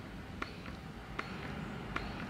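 Wearable electric breast pump running close to the microphone: a faint low hum with a soft click about every three-quarters of a second as it cycles its suction, very quiet, as a noise-cancelling, soft-suction pump is meant to be.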